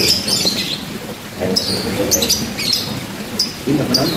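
Small birds chirping: a string of short, high, falling chirps, about two a second.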